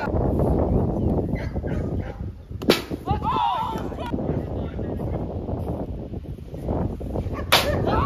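Two sharp cracks of a wiffle ball being struck, about five seconds apart, each followed by a brief shout, over a steady rumble of wind on the microphone.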